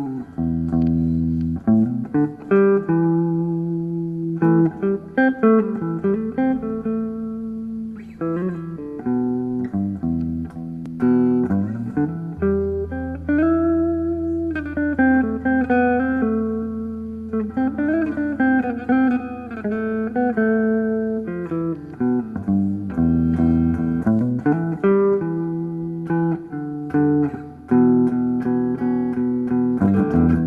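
Amplified electric guitar improvising: single-note melodic lines with bent notes, played over long-held low notes.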